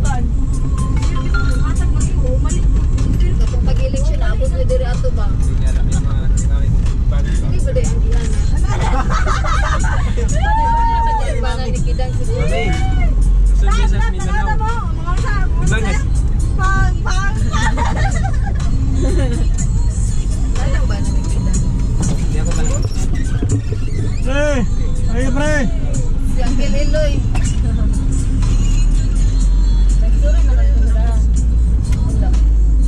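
Road noise inside a moving car's cabin: a heavy, steady low rumble from driving over an unpaved road, with many small clicks and rattles.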